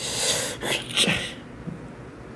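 Three short, breathy puffs of a person's breath in quick succession, the last the loudest, picked up close on a phone livestream microphone.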